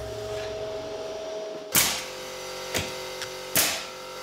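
Pneumatic nail gun firing three sharp shots about a second apart, starting about two seconds in, over a steady hum.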